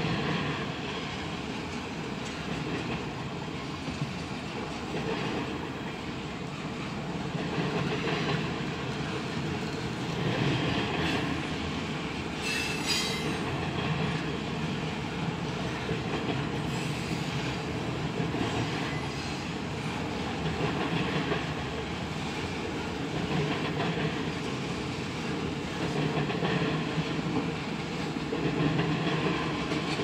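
Double-stack intermodal freight cars rolling past, with a steady rumble and clatter of steel wheels on the rails that swells and eases as the cars go by. A brief high-pitched wheel squeal comes near the middle.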